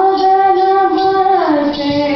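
A high female voice singing a slow Indian classical melody, holding one note with small ornamental turns and then gliding down to a lower note about one and a half seconds in.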